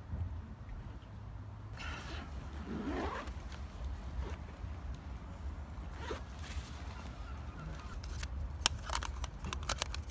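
A camera bag's zip being opened, then camera gear being handled, with several sharp clicks near the end as a lens cap is pulled off a Canon camera.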